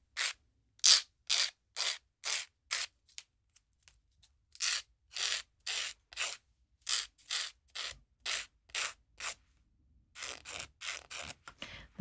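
Hand nail file rasping along the side of a clear Gel-X soft-gel nail tip in short separate strokes, about two a second, with a couple of brief pauses. The tip is being filed narrower to fit a narrow cuticle area.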